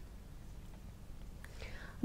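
A pause in a voiceover: faint room tone with a low hum, a small mouth click, and a quiet intake of breath near the end.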